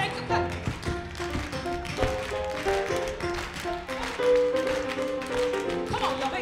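Live band music with held notes stepping from pitch to pitch, and rhythmic hand-clapping from performers and audience along with it.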